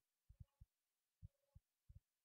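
Near silence: room tone broken by a few faint, short low thumps.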